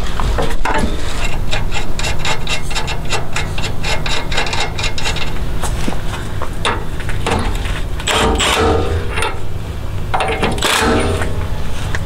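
Hand ratchet clicking in rapid, even strokes for about four seconds as it runs a castle nut down onto the stud of a new lower ball joint. After that come a few irregular metal scrapes and knocks as the tool is handled and a torque wrench is fitted to the nut.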